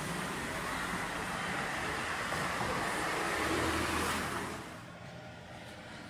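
A car passing on the street, its tyre and engine noise building to a peak about four seconds in and then fading away.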